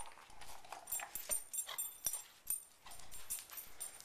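A puppy whining in short, wavering cries, with many sharp clicks and taps in between.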